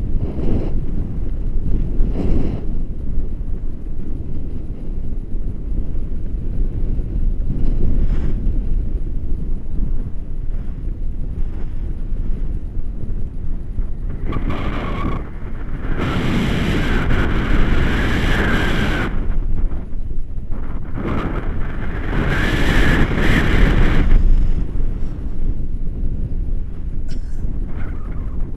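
Wind buffeting an action camera's microphone in paraglider flight: a steady low rumble. Two louder stretches of brighter hiss come about halfway through and again some seconds later.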